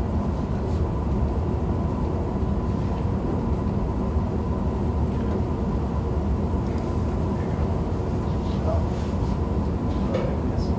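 Steady low rumble of room background noise with a faint steady hum, unchanging throughout, and faint voices near the end.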